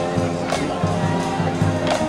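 High school marching band playing: brass holding full chords over a pulsing low bass line, with drum hits marking the beat.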